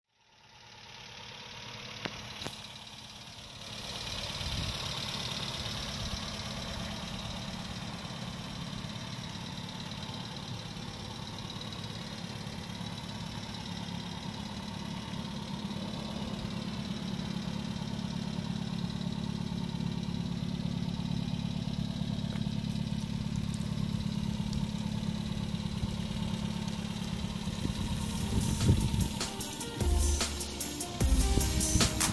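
1955 Nash Metropolitan's Austin-built four-cylinder engine running at a steady idle, fading in over the first few seconds.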